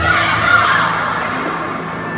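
A burst of high-pitched shouting and screaming voices that swells over the first half-second and fades away over about a second and a half.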